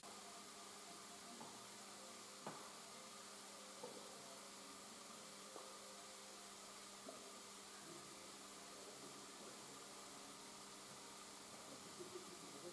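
Near silence: a faint steady hiss and low hum of room tone, with a few faint scattered ticks.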